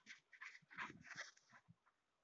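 A small dog close by, making a quick run of short scuffing, snuffling noises for about a second and a half.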